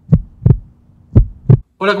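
Heartbeat sound effect: low lub-dub thumps in pairs, about one pair a second, two pairs in all, over a faint steady low hum.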